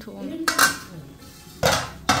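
Metal utensils clanking against a metal kadai on the stove: two loud clatters, one about half a second in and one near the end.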